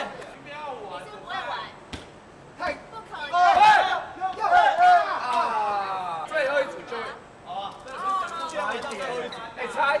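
A group of people chattering and exclaiming over one another, loudest in the middle, with a sharp knock about two seconds in.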